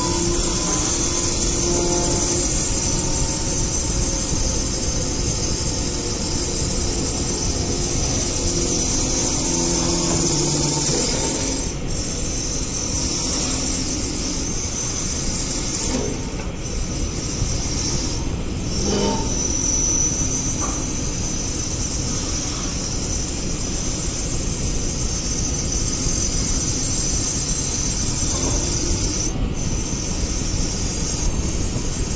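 Automatic twin-spindle wood-turning lathe running, its cutters shaving two spinning wooden blanks into rounded knob shapes: a steady, loud machine-and-cutting noise with a high hiss and a few faint steady tones.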